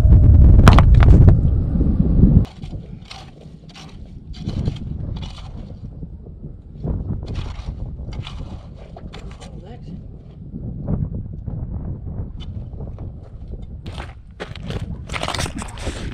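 Garden hoe striking and scraping into stony sand and gravel, an irregular knock or scrape every second or so. A loud low rumble fills the first two seconds and cuts off suddenly, and louder knocks near the end.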